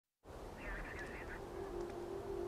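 Faint open-air ambience with a low wind rumble, a brief warbling bird call about half a second in, and a steady low hum setting in around the middle.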